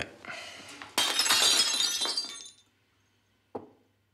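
A sudden crash of breaking glass about a second in, shattering for over a second and then dying away. Near the end comes a single sharp knock.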